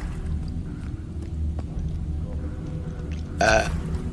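Deep steady rumbling ambient drone from horror-game footage. About three and a half seconds in, a short, loud, voice-like burst cuts in.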